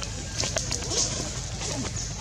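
Faint, short animal calls over a steady outdoor background hiss.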